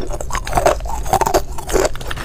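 Hard ice being chewed, a dense, irregular run of sharp crunches and cracks.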